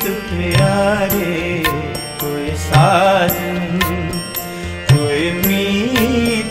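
Instrumental passage of Sikh shabad kirtan music: a wavering melody line over a held drone, with regular hand-drum strokes.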